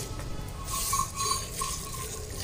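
Buffalo milk squirted by hand into a steel bucket: repeated hissing spurts of the jets striking the milk and metal, loudest in the middle.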